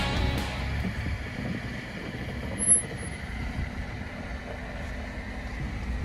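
Low, steady rumble of a 2021 Ford Bronco's engine as it crawls slowly over granite rock, with a brief louder sound about halfway through. Rock music fades out in the first moment.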